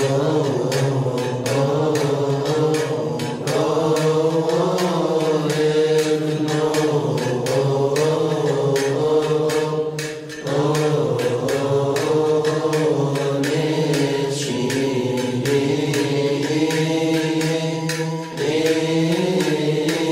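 Coptic liturgical chant: men's voices chanting one long melismatic line in unison, with brief breaks for breath about ten and eighteen seconds in. Frequent sharp ticks run over the singing.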